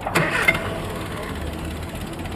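A small car's engine being cranked over by its starter motor, not catching.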